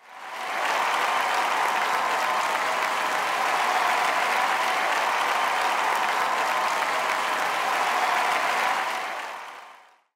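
Large audience applauding, fading in at the start, holding steady and fading out over the last second or so.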